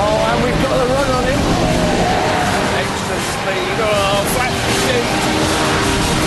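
Six-cylinder sports roadsters, a BMW Z4 3.0 and a Nissan 350Z, running hard around a race circuit with a steady engine drone. A man's voice exclaims over the engines.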